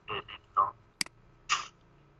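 A few short, low spoken syllables, then a single sharp computer-mouse click about a second in, followed by a short breathy sound.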